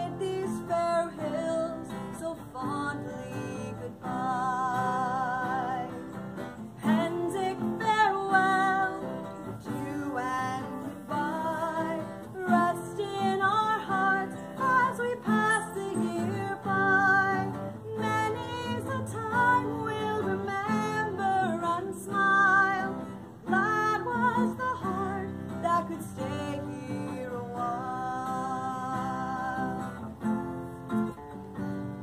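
A woman singing a song, some of her notes held with a wavering vibrato, while accompanying herself on an acoustic guitar.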